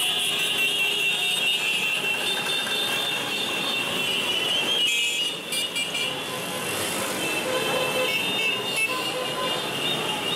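Motorcycles passing in a crowded street parade, engines running and horns honking.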